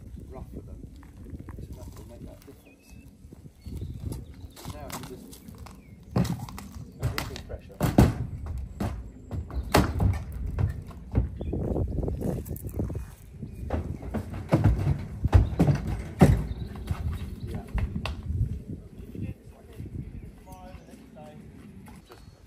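A horse's hooves striking a trailer's ramp and floor as it walks into a horse trailer: a run of irregular heavy thuds, loudest in the middle of the stretch.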